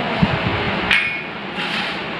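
A soft knock, then about a second in a single sharp metallic clink with a short ringing tone: a steel kitchen vessel being tapped, heard over a steady background hiss.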